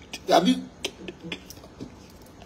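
A man's short vocal sound, then about four sharp, quiet clicks over the next second and a half.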